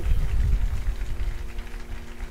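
Low rumbling noise on a handheld vocal microphone, loudest in the first half-second, over a faint steady held chord.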